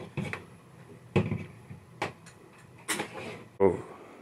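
A series of separate knocks and clunks of metal equipment being handled, about five of them, one every second or so.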